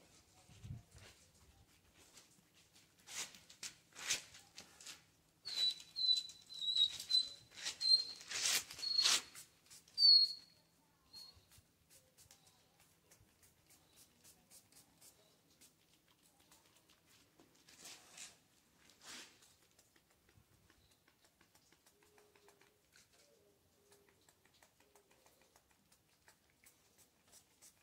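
A small bottle of mange medication sprayed onto a dog's coat in a string of short hisses, most of them between about three and ten seconds in. Over them runs a series of short high chirps. Two more hisses come a little later, and then it falls near quiet.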